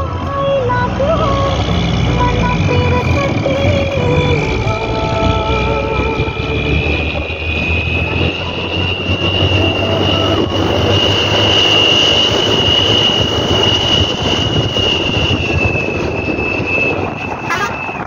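Steady engine and road noise inside a bus driving along a rough dirt mountain road. A high whine runs through most of it, slowly rising in pitch and sinking again near the end.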